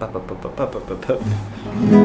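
Classical nylon-string guitar played fingerstyle, a quick tremolo of rapidly repeated plucked notes in the p-a-m-i pattern, with a louder low note near the end.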